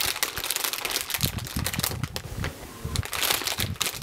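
A plastic crisp packet being crumpled and crinkled by hand close to the microphone, a dense, irregular run of crackles.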